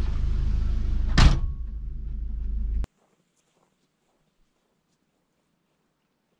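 Low, steady engine and road rumble heard from inside a vehicle's cabin as it drives, with one loud thump about a second in. The rumble cuts off abruptly about three seconds in, leaving near silence.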